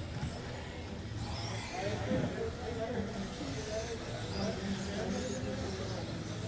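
Electric radio-controlled stock buggies whining faintly, their pitch rising and falling as they run the track, over voices and a steady low hum.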